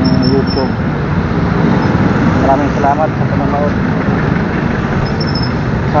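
Steady engine and road noise of a motorcycle riding in city traffic, heard from the rider's own camera, with a voice speaking in short stretches over it.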